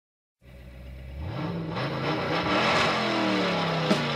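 Recorded car engine revving and accelerating, starting suddenly about half a second in and rising in pitch as it speeds up: the engine sound effect that opens a car song on the soundtrack.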